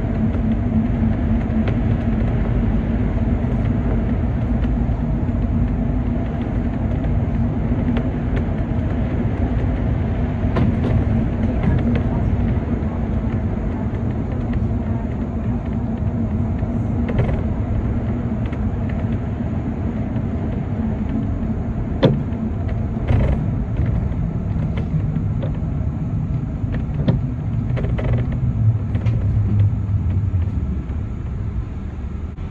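City bus running, heard from inside the cabin: a steady engine and road rumble with a low hum that fades as the bus slows in traffic. A few short knocks and clicks come in the last third, the sharpest about two-thirds of the way through.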